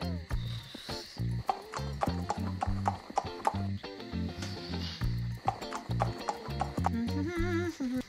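Clip-clop of trotting horse hooves, a sound effect of quick, sharp hoofbeats, laid over background music with a repeating bass line.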